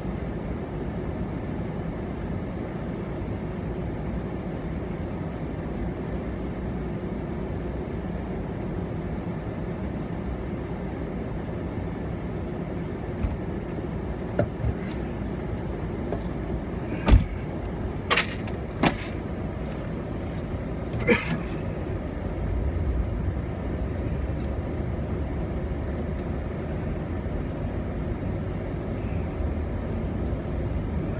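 Truck engine idling, heard from inside the cab, with a handful of sharp clanks and knocks around the middle. Near the end the engine sound grows louder and deeper as the truck pulls forward through the snow.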